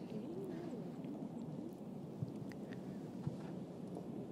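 Quiet open-air golf-course ambience with faint, wavering low-pitched calls, like distant birds, and a few light ticks.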